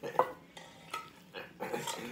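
A metal spoon clinking and scraping against a small metal pot while food is scooped and stirred: a few separate sharp clinks, some with a short ring.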